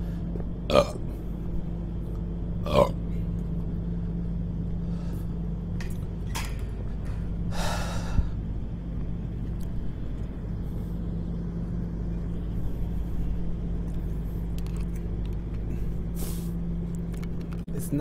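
A man burping, with short loud burps about a second and three seconds in and further, fainter sounds later, over a steady low hum.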